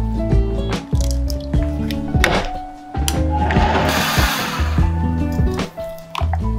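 Background music with a steady beat throughout. About three and a half seconds in, a burst of rushing noise lasting just over a second: a countertop blender running on the rye crepe batter.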